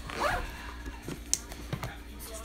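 A backpack's zipper being pulled as the bag is handled, with a few small clicks and rustles.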